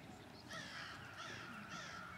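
Three harsh bird calls in quick succession, starting about half a second in.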